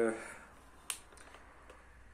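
A single short, sharp click about a second in, after a man's spoken word trails off, with quiet room tone around it.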